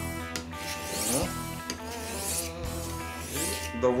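Steel knife blade being honed by hand on a fine-grit whetstone wetted with water: about three rasping strokes of metal rubbing on stone.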